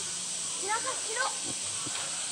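A few short, indistinct voices of people in the background over a steady high hiss.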